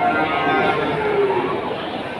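A cow mooing: one long call that drops in pitch as it ends.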